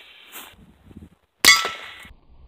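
A single sharp crack of a .22 CB short fired from a Heritage Rough Rider revolver about one and a half seconds in, followed at once by a brief metallic ring as the bullet strikes an empty double-walled metal tumbler about ten feet away.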